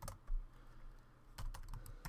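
Typing on a computer keyboard: a handful of separate keystrokes, the loudest about a third of a second in and a quick cluster in the second half.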